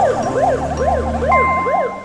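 Ambulance siren in a fast yelp, the pitch sweeping up and down about three times a second over a low hum, cutting off near the end.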